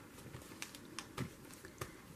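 Fingertips pressing and rubbing a freshly glued paper cutout onto a journal page: faint rustling with a few light clicks and taps.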